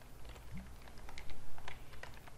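Computer keyboard typing: an irregular run of key clicks as a command is typed, loudest about halfway through.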